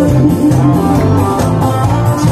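Loud instrumental backing music with guitar and a stepping bass line, played through stage PA speakers.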